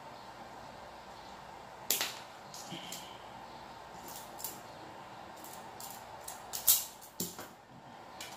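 Sharp clicks and snaps of hand tools, scissors and a wire stripper, being worked and set down on a workbench while stripping wire. The first click comes about two seconds in, then a run of them follows, the loudest near the end, over a faint steady hiss.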